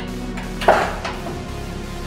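Background music with one sharp click about two-thirds of a second in, as a USB cable plug is pushed into the modem's USB port.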